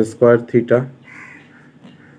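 A man's voice says a few short syllables, then a pen scratches faintly on paper as it writes.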